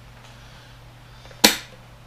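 A single sharp snap about one and a half seconds in, dying away quickly, as a part of a flat-pack laptop desk is pulled off its metal pivot bracket.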